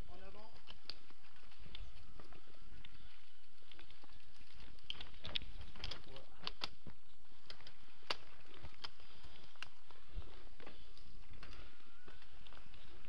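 Mountain bike ridden over a rough forest trail, heard from a camera on the rider: a steady rumble of rolling and handling noise with frequent sharp clicks and rattles from the bike.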